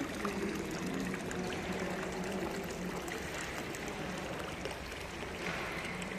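Indoor ornamental fountain: thin streams of water running steadily from its spouts and trickling into the metal basin.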